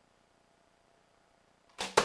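48-pound Black Widow PLX longbow being shot: the bowstring is released near the end with a short thump. A fraction of a second later comes a louder, sharp smack, the arrow striking the target.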